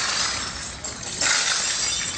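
Glass memorial prayer candles being kicked over and smashing on pavement: a continuous clatter of breaking and clinking glass, with a louder burst about a second and a quarter in.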